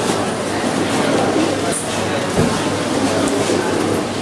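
Busy fish-market hall ambience: a continuous din of background voices over a steady low hum and rumble of machinery.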